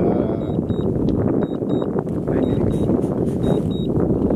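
A steady, loud rush of wind on the microphone, mixed with the propeller noise of a DJI Phantom 4 Pro drone flying back toward the pilot on return-to-home. Short high beeps come in pairs about once a second, the alert a DJI remote controller gives during return-to-home.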